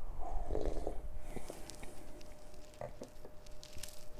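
A man sipping beer from a glass and swallowing, followed by a few small mouth and lip clicks; quiet throughout.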